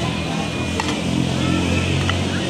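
A steady low motor drone, like an engine running nearby. A sharp knock a little under a second in, from a hoe blade striking the paving stones.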